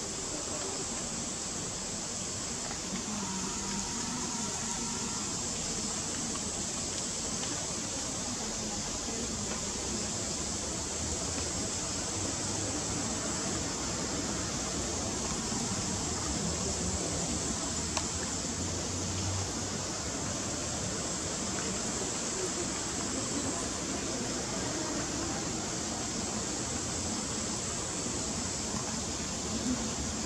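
Steady rushing background noise with no change throughout, like running water or ambient hiss, with no distinct animal sounds.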